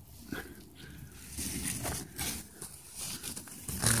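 Irregular rustling and scuffing as a hand reaches in among pumpkin vines and leaves.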